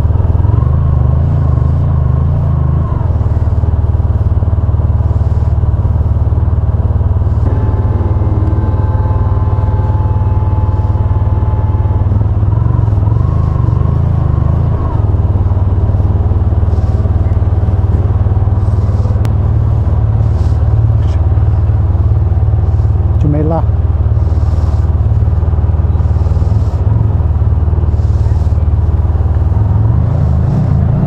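Motorcycle engine running at low speed in slow traffic, a steady low rumble throughout. A brief rising squeak cuts in about two-thirds of the way through.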